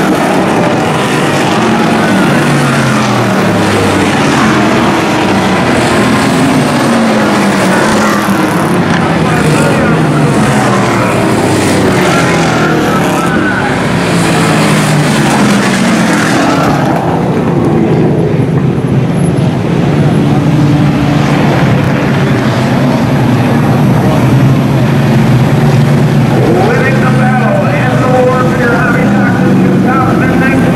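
A pack of hobby stock race cars running on the oval, their engine notes rising and falling as they pass. After about 17 s the sound turns to a softer, steadier engine drone.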